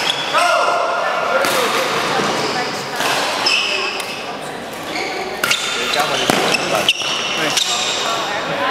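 Badminton doubles rally in a large sports hall: rackets strike the shuttlecock with sharp cracks at irregular intervals, court shoes give short high squeaks on the floor, and voices carry through the hall.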